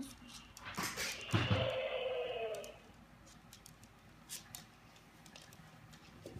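A short recorded sound effect, about a second long with a slightly arching pitch, played while a sound is being chosen for a Dash coding robot. It comes just after a low thump.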